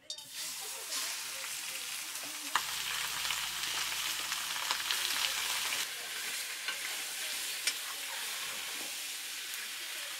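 Raw pork chunks dropped into hot oil in a wok burst into a loud sizzle all at once, then keep frying with a steady hiss while stirred with a metal spatula. A few sharp clicks of the spatula on the pan come through the hiss.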